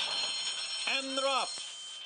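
Racetrack starting-gate bell ringing steadily as the horses break from the gate, over the noise of the break; a voice calls out briefly about a second in.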